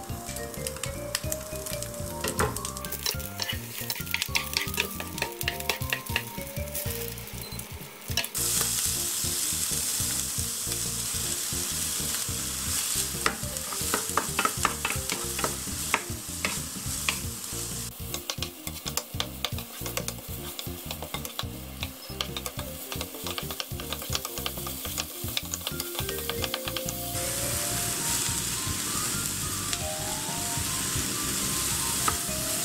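Chopped garlic, then onion, frying in olive oil in a nonstick frying pan, with a spatula clicking and scraping against the pan. The sizzle turns much louder and hissier about eight seconds in. A soft tune plays underneath.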